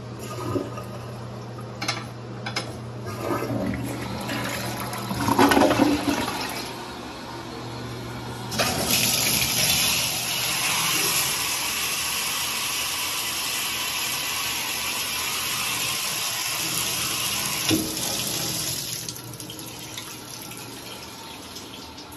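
Toilet flushing: water rushing and swirling down the bowl in uneven surges for several seconds. Then, about eight and a half seconds in, a shower head comes on and sprays steadily onto tile, fading out around nineteen seconds.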